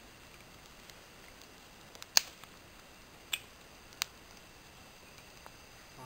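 Newly kindled campfire of thin dry twigs giving three sharp crackling pops, the first, about two seconds in, much the loudest.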